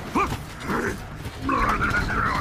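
A voice making short wordless sounds that rise and fall in pitch, over a low steady rumble of an animated semi-truck rolling down the road.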